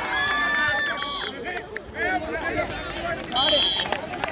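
Netball players shouting and calling out during play, with voices held on long notes in the first second, sharp taps from feet or the ball throughout, and a brief high, steady whistle-like tone near the end.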